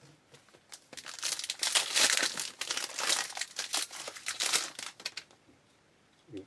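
Crackling and crinkling of a trading-card pack wrapper being torn open and handled, lasting about four seconds from about a second in.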